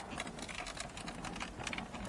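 Car radio head unit with its metal chassis and plastic fascia being slid forward out of the dashboard, giving a run of small irregular clicks and rattles.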